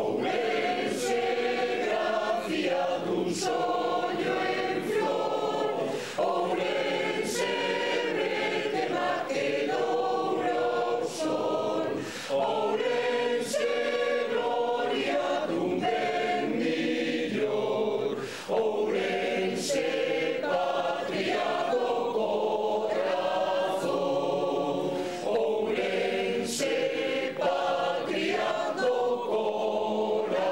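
Mixed choir of men and women singing, phrase after phrase, with short breaks between phrases.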